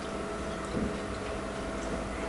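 Faint, irregular light clicks of chopsticks against a rice bowl while eating, over a steady low hum.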